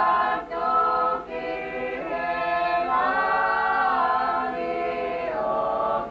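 A group of voices singing unaccompanied in harmony, holding long notes, with short breaks for breath about half a second and a second in.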